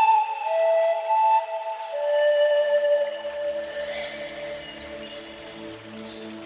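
Instrumental pan flute music: held, gliding pan flute notes over soft backing. The flute line fades about three seconds in, leaving a quieter low, sustained accompaniment.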